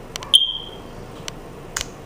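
A single short high-pitched tone begins with a sharp click about a third of a second in and fades quickly, followed by a few faint clicks.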